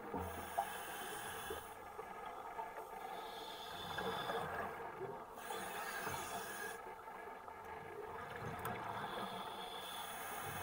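Scuba diver breathing through a regulator underwater: long hissing inhalations that come and go every few seconds, with lower bubbling and rumble in between.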